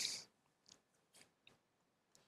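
Near silence with a few faint, short scratchy rubs: a cotton swab scrubbing a laptop speaker.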